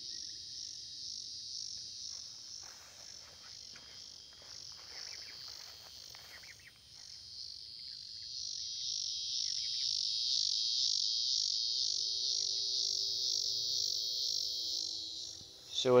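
Chorus of insects trilling steadily in a high, pulsing band, growing louder about halfway through.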